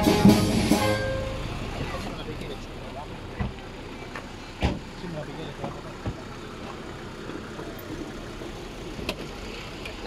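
Band music cutting off about a second in, followed by quieter outdoor background with faint voices, low traffic-like noise and a few sharp knocks.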